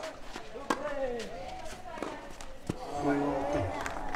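Tennis ball struck by rackets in a short rally: three sharp hits, the first about a second in, then one at about two seconds and one soon after, with voices calling between them.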